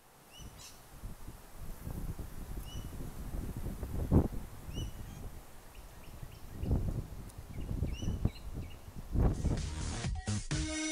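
Outdoor ambience of small birds chirping in short repeated calls, over wind rumbling on the microphone that gusts about four seconds in, near seven seconds and again just before the end.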